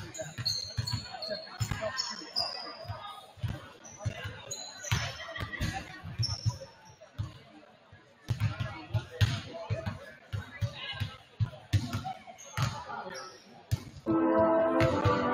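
A basketball being dribbled on a hardwood gym floor: a run of short thumps, with sneakers squeaking sharply now and then, mostly in the first few seconds.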